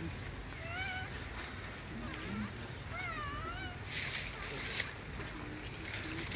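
Infant macaque crying: two short, high-pitched, wavering squeals, the first just under a second in and a longer one about three seconds in, with a brief rustling hiss a little after.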